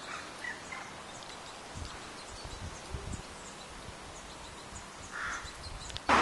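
Faint outdoor ambience: a steady low hiss with a few low rumbles of wind on the microphone around the middle, and one short faint call about five seconds in.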